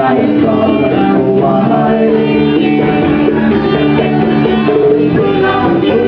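Live folk band: a woman singing lead over two acoustic guitars, the music running steadily without a break.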